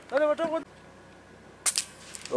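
A short voiced call, then about a second later one brief, sharp high-pitched click.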